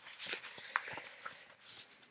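Loose paper memorabilia rustling and sliding in short bursts as it is gathered and pushed back into a paper pocket of a book, with one sharp click about three quarters of a second in.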